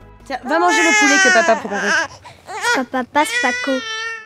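A newborn baby crying in two long, high, wavering wails with a short break between them.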